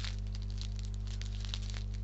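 Plastic candy-bar wrapper of a Reese's Fast Break crinkling and crackling in quick small clicks as it is torn open, over a steady low hum.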